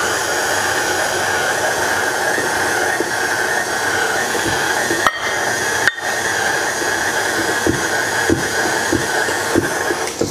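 Electric tilt-head stand mixer running steadily at speed, beating a thick rice-flour cookie dough, with two brief clicks about five and six seconds in.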